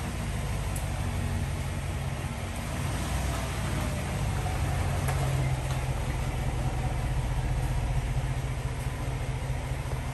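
Chevrolet Silverado Trail Boss's 6.2-litre V8 running at low speed as the truck creeps forward, a steady low engine rumble that grows a little louder about halfway through.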